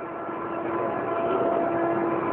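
A vehicle passing: a rush of noise that grows louder, with a steady held tone over it.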